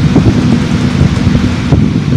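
Loud, steady low rumbling noise with a constant low hum running underneath.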